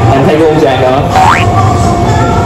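A short cartoon-style rising whistle sound effect, a quick upward glide about a second in, laid over background music and a man's talk.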